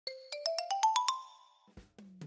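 Short musical intro jingle: about eight quick, ringing chime-like notes climbing up a scale, dying away after about a second and a half.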